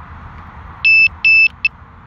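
Electronic warning beeps from a drone's controller: two short beeps about a third of a second apart and a brief third one, each a single high tone, over a steady hiss.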